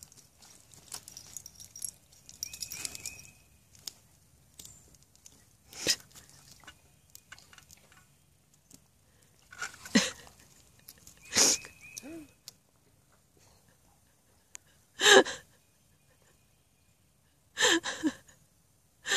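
About five short bursts of a person's stifled laughter, spaced several seconds apart with quiet between, over faint splashing of a dog's paws in water pooled on a mesh pool cover.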